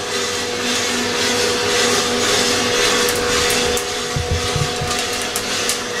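Diedrich drum coffee roaster running, a steady whirring noise with a constant hum, and scattered faint sharp pops from the beans in first crack. A few low thumps come about four seconds in.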